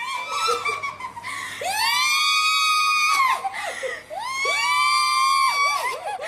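Shrill human screaming: a few short shrieks, then two long high-pitched screams of about a second and a half each, the first starting near two seconds in and the second near four and a half.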